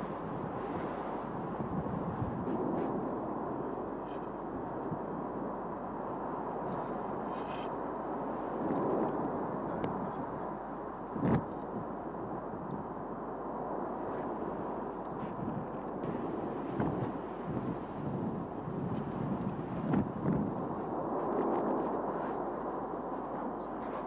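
Mount Etna erupting in lava fountains: a steady roar with occasional sharp bangs, the loudest about eleven seconds in.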